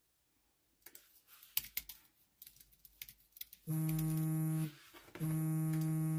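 Scattered light clicks and taps, then a steady electronic buzz held at one unchanging pitch, sounding twice for about a second each time and switching on and off abruptly.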